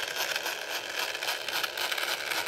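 Small 300 RPM DC gear motor running under PWM control from an L293D driver, a steady, even whir.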